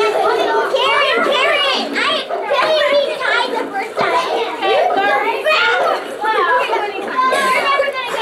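Children's chatter: several young children talking and calling out over one another, with no single voice standing out.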